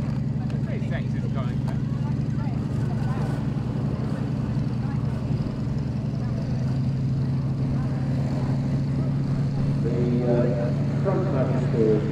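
Two Miles Magister trainers' four-cylinder de Havilland Gipsy Major engines and propellers droning steadily in flight, the note shifting and settling a little past halfway. A man's voice comes in near the end.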